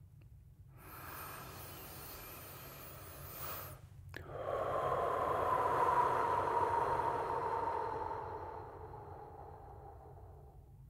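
A man's deep breath close to the microphone: a slow inhale lasting about three seconds, then a louder, long exhale through rounded lips lasting about five seconds that slowly fades away.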